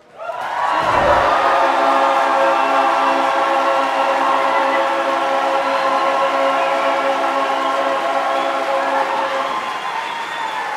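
Men's barbershop chorus singing a cappella: after a brief cut-off, the voices swell back in and hold one loud, sustained final chord for about eight seconds, releasing shortly before the end.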